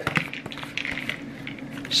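Plastic shaker cup being handled on a counter: irregular small taps and clicks of plastic.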